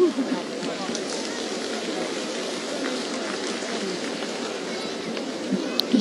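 Crowd chatter in a large sports arena: many voices talking at once, none distinct, at a steady level.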